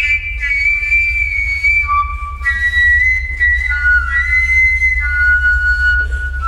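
Live experimental music: high, piping held tones, several at once, stepping between a few pitches, over a steady low drone.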